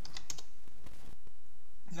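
Computer keyboard keys being typed, a quick run of several keystrokes in the first half second while entering a login password.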